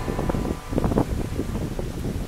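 Wind buffeting the microphone in uneven gusts, heaviest in the low end.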